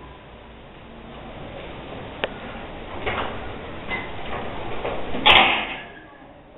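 Room noise in a classroom where children are writing at wooden desks. There is one sharp click about two seconds in, soft rustles after it, and a short, loud clatter near the end.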